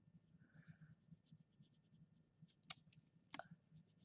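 Near silence with faint, light scratching of a brown crayon stroking on paper, and two sharp light clicks in the second half, about two-thirds of a second apart.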